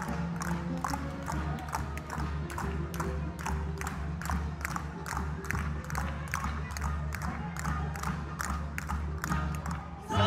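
Coconut-shell halves clacked together in a fast, steady rhythm by a troupe of maglalatik dancers, striking the shells in their hands against those strapped to their bodies, over backing music with a sustained low bass.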